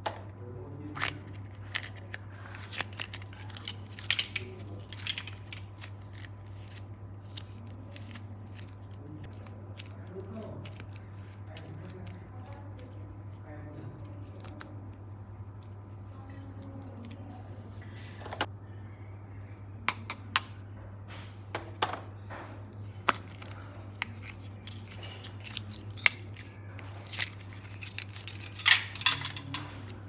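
Scattered sharp clicks and taps of plastic toy hearts and soft modelling clay being handled over a glass dish, thickest in the first few seconds and again near the end, over a steady low hum.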